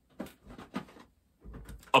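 Plastic cassette tape cases clicking and clattering as they are handled and one is picked out: a few light clicks in the first second, then a longer rattle with a soft knock just before the end.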